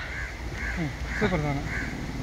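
Crows cawing in the background, a run of short calls repeating about twice a second, under a man's quiet voice.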